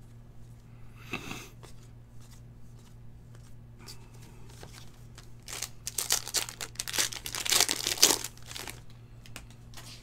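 A trading-card pack wrapper being torn open and crinkled by hand, loudest and densest from a little past the middle to near the end, after a few seconds of light card-handling clicks and rustles.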